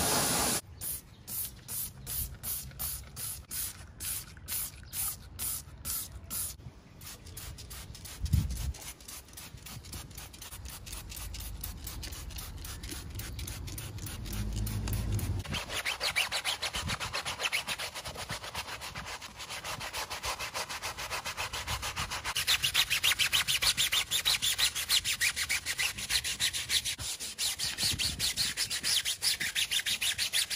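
Stiff-bristled brush scrubbing a foam-covered rubber tyre sidewall in back-and-forth strokes, about two a second at first, then faster and louder from about halfway. A pressure-washer spray cuts off just under a second in.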